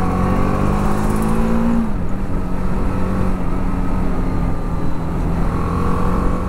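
BMW G 310 R's single-cylinder engine on its stock exhaust, heard from the rider's seat under way. The revs climb for about two seconds, then drop suddenly at what sounds like a gear change, and it runs on steadily, with wind rush on the microphone.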